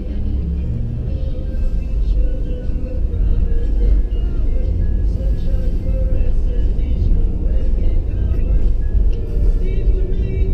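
Music with vocals playing on the car's satellite radio inside the cabin, over the steady low rumble of the car's engine and tyres on the road.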